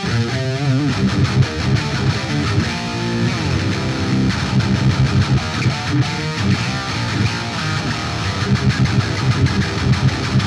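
Distorted electric guitar played through a Monomyth-modded Marshall Silver Jubilee valve amp head into a 4x12 cabinet. It opens with lead notes shaken with wide vibrato, holds a note for about a second near the middle, then breaks into a fast, tight low riff.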